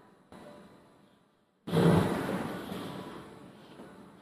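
A long breathy exhale close to the microphone, starting suddenly a little under two seconds in and fading away, after softer breathy noise earlier.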